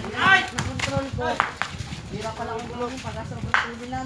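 Shouting voices of people at a street basketball game, loudest just after the start, with several sharp knocks of a basketball bouncing on concrete, the last and strongest near the end.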